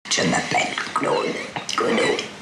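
A woman speaking a short sentence with esophageal speech, the voice of someone whose larynx was removed for throat cancer. The voice is rough and breathy, with little clear pitch.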